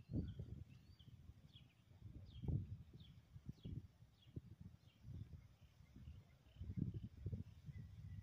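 Wind buffeting the microphone in irregular low gusts, with a run of faint short bird chirps in the first half.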